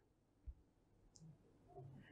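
Near silence: room tone, with a faint low thump about half a second in and a faint short high tick just after a second.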